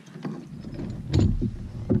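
Knocks and clunks of fishing gear being handled on a kayak, with a heavy low thump a little past a second in and a sharp knock near the end.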